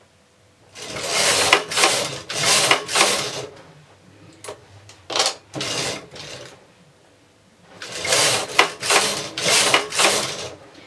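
Knitting-machine carriage sliding back and forth across the metal needle bed while knitting rows: a rasping whir about a second long on each pass, in two runs of passes near the start and near the end. Shorter, fainter scrapes come in between.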